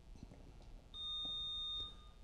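Quiz-bowl contestant buzzer sounding once as a player buzzes in to answer: a steady, high-pitched electronic beep starting about a second in and lasting just under a second.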